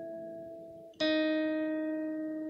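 Electric guitar playing a slow jazzy gospel lick: a held chord rings and fades out just before a second, new chord is struck about a second in and left ringing.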